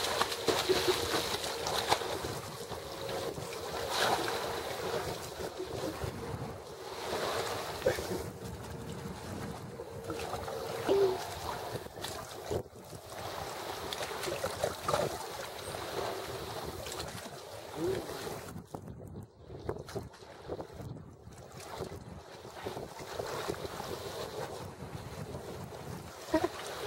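Wind buffeting the microphone over shallow sea water lapping against a concrete seawall, with a dog splashing as it swims near the start.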